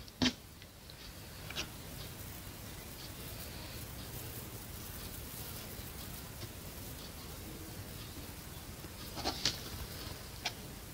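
Quiet room tone with a faint low hum, broken by a few light clicks and taps from handling a paint bottle and a palette knife spreading paint on a canvas: one just after the start, one about a second and a half in, and a small cluster near the end.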